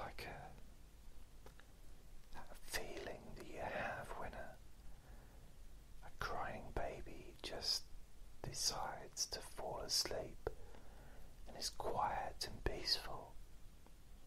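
A man whispering in short phrases with pauses between them.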